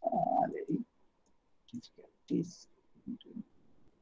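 A man's voice speaks briefly in the first second, followed by a few short, soft bits of voice. A few light clicks come in the middle.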